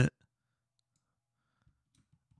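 Near silence, with one faint computer mouse click near the end.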